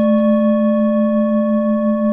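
A singing bowl ringing on after being struck: a low, steady tone with several higher, unevenly spaced overtones and a slow wavering pulse.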